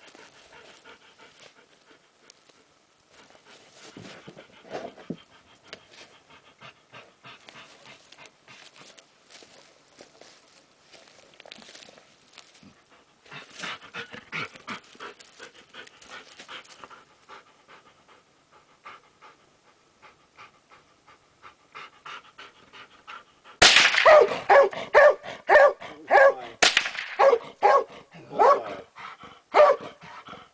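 Large dog panting quietly, then, about three-quarters of the way in, breaking into loud, rapid, repeated barking. Two sharp cracks stand out, one as the barking starts and another about three seconds later.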